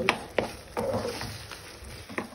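Wooden spoon stirring thick melted cheese in a pan of mıhlama, knocking against the pan a few sharp times early on.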